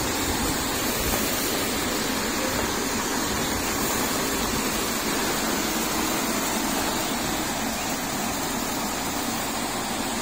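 Electric fan in a wire-caged frame running steadily with an even rush of air, blowing the loose skins off shallot seed bulbs as they are poured down through its airflow.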